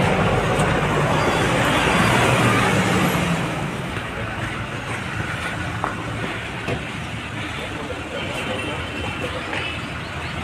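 Street commotion: a vehicle running amid a crowd's jumbled voices, louder for the first few seconds and then settling, with a couple of short knocks about six seconds in.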